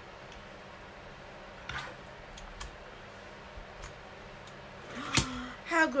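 Small paper trimmer and card being handled: a faint tap, then one sharp click about five seconds in, over quiet room tone.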